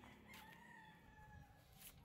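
A rooster crowing faintly: one long call that falls slightly in pitch, with a soft click near the end.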